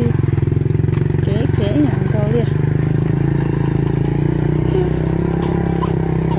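Small motorcycle engine running steadily at low revs, with a short stretch of voices about a second and a half in.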